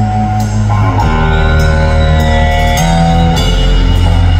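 Live rock band played loud through a PA and heard from the crowd: distorted electric guitar chords are held over drums and cymbals, and the chord changes about a second in and again near the end. No vocal line stands out.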